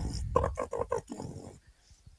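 Beatboxing heard over a video-chat connection: a quick rhythmic run of clicks, snare-like hits and voiced bass sounds that stops about one and a half seconds in.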